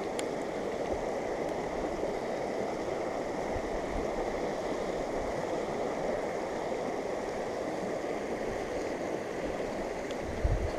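Steady rush of a shallow, rocky mountain river flowing past, an even noise with no breaks.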